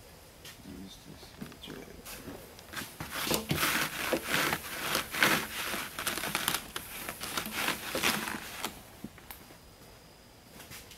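A cloth rag wiping and rubbing a freshly wet-sanded painted motorcycle gas tank to dry it, heard as a run of irregular rubbing strokes that starts about three seconds in and stops near the end.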